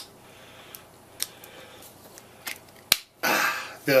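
Several short plastic clicks from a charger plug and a US plug adapter being handled and fitted together. The sharpest click comes near three seconds in.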